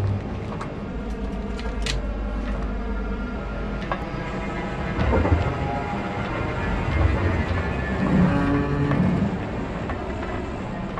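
Steady low rumble of engine and cabin noise inside a cargo aircraft's hold after landing, with a few sharp clicks and knocks early on and around four seconds in.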